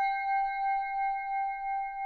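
A struck singing bowl ringing on with a slow, even wobble of about two pulses a second, marking the end of a timed meditation practice.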